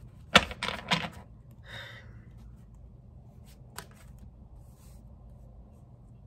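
Tarot cards being handled: a few sharp clicks and taps in the first second, a short papery rustle near two seconds in, and one more click near four seconds, over a faint steady room hum.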